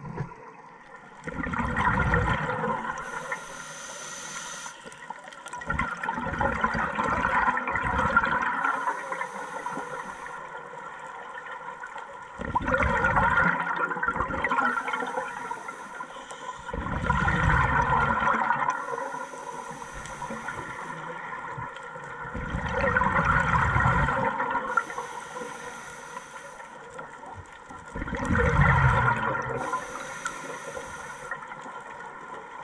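Scuba diver breathing through a regulator underwater: a short thin hiss of inhaling, then a loud gurgling burst of exhaled bubbles, in a slow regular cycle about every five to six seconds, six exhalations in all.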